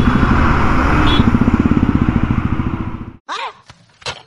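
Royal Enfield Classic 350's single-cylinder engine running with a steady, rapid thump while riding in traffic. A short high beep comes about a second in. The engine sound cuts off abruptly near the end.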